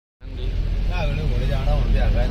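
Steady low engine and road rumble inside the cab of a Mahindra Bolero pickup on the move, with a person's voice over it from about a second in.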